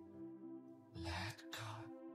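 Ambient music with steady held tones. About a second in, a close-miked breath comes in two short parts in quick succession, louder than the music.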